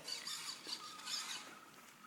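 Home-built wheeled robot's drive motors whirring faintly and unevenly as it starts to roll across a hardwood floor, with a thin steady high tone underneath.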